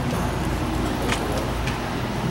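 Steady room noise of a church hall full of people stirring, a low rumble and hiss with a few faint clicks and rustles.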